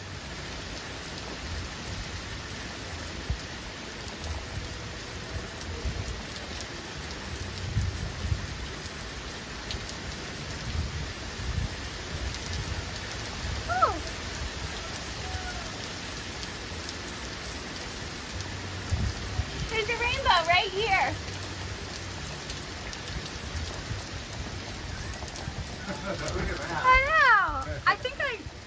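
Heavy tropical rain shower falling on the sea, a steady hiss with low rumbles coming and going. A few short chirping calls come about halfway through and near the end.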